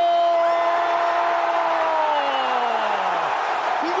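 A football commentator's long drawn-out 'gooool' cry: one vowel held on a steady note for over two seconds, then sliding down in pitch and dying away. Steady crowd noise from the stadium broadcast runs beneath it.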